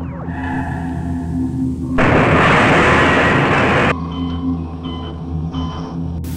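Droning ambient music with a steady low hum, broken about two seconds in by a loud burst of hiss-like noise that lasts about two seconds and cuts off suddenly. A few faint short high beeps follow near the end.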